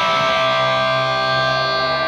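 Electric guitar in a live blues band holding a long, ringing chord, with lower notes joining about half a second in, between busier bent-note licks.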